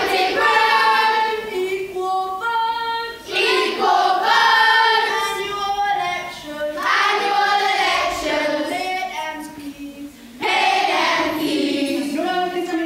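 A group of children singing together as a choir, in phrases a few seconds long with short breaks between.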